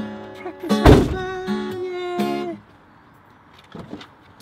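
Acoustic guitars strummed, a few held chords with one sharp, loud strum about a second in, stopping about two and a half seconds in.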